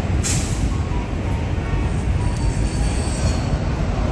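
Subway train crossing the steel Manhattan Bridge overhead: a loud, steady low rumble, with a brief high hiss just after the start and a faint high wheel squeal in the second half.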